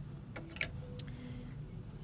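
A few faint, sharp clicks, about three in the first second, as the small plastic bobbin and bobbin cover of a sewing machine are handled and set down; a faint steady room hum lies underneath.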